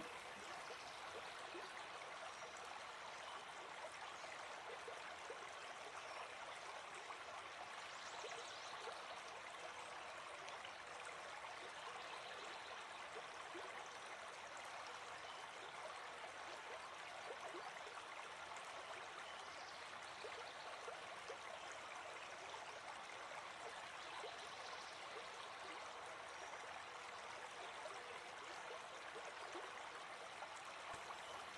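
Faint, steady sound of flowing water, like a stream, running evenly throughout.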